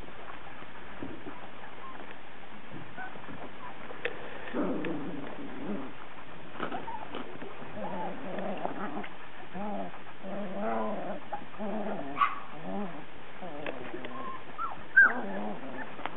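Puppies making a string of short, wavering calls as they play and wrestle together. The calls begin about four seconds in and come thick and fast, with a sharper, louder one near the end.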